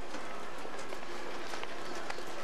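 Steady city-street background noise at night, with faint distant voices and a couple of light ticks.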